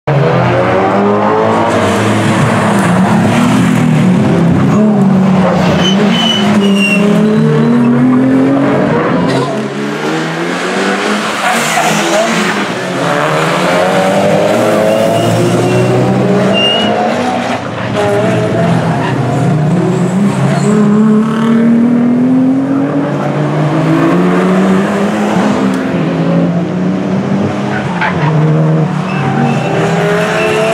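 A sports car's engine heard from trackside as it laps a tight circuit, revving up through the gears and dropping back over and over, with tyres squealing in the corners.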